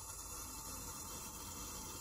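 Faint, steady background noise: an even hiss over a low hum, with no distinct events.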